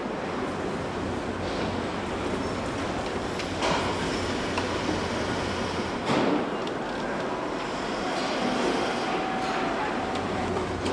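Car assembly hall noise: a steady machinery hum and hiss, with a clank about four seconds in and another about six seconds in.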